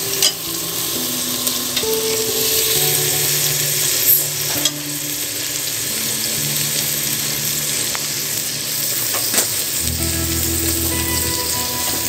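Onions, whole spices and ginger-garlic paste sizzling steadily in hot oil in a pressure cooker as they are sautéed. A slotted steel ladle stirs them, clicking against the pot a few times. A soft, slow background tune of low held notes plays underneath.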